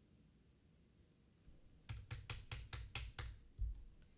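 Computer keyboard keys struck in a quick run of about seven keystrokes, each with a low thud, starting about two seconds in, with one more thud near the end.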